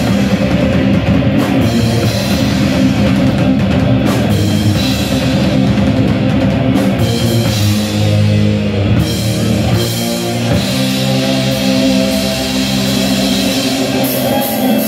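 Heavy metal band playing live, loud and steady: two electric guitars, bass guitar and drum kit.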